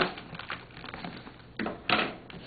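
Packing tape being peeled off a cardboard box, crackling and ripping in irregular bursts, with a sharp rip at the start and a louder one near the end.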